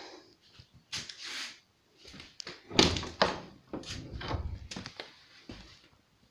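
Knocks and thuds on old wood in a small room: a sharp knock about a second in, a louder thud just under three seconds in, then a run of lighter knocks.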